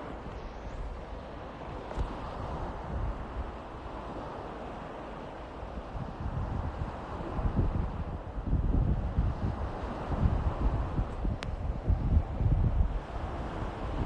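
Wind buffeting a phone's microphone in irregular gusts that grow stronger about halfway through.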